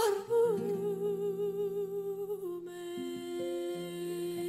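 A woman's solo voice holding a long sung note with vibrato, then settling onto a lower steady note about two-thirds of the way through, over sustained low accompanying notes.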